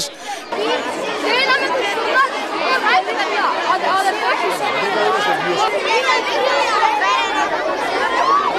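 A crowd of schoolchildren chattering and calling out all at once, many high voices overlapping into a steady babble.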